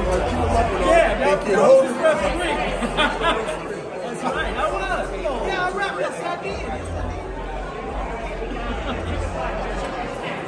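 Overlapping chatter of several people talking at once, with no single clear voice.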